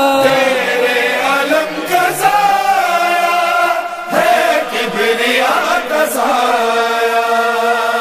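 Male voices chanting a devotional Urdu song in long held, melismatic notes, with a short break about halfway through.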